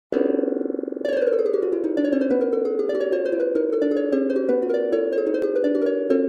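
Bounce Metronome Pro's sonified pendulum wave: a stack of notes on the harmonics of the harmonic series, each voice repeating at its own slightly different rate. They strike together as one chord at the start and again about a second in, then drift out of step into a rapid, rippling cascade of short notes.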